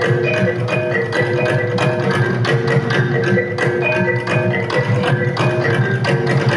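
Live traditional percussion ensemble of gongs and tuned mallet instruments, playing a fast, steady pattern of strokes over repeating ringing notes.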